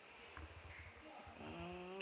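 A woman's closed-mouth "mm" hum of hesitation between sentences, starting about one and a half seconds in, over a faint low room rumble.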